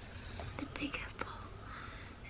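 Soft whispering: a quiet, breathy voice with a few faint clicks.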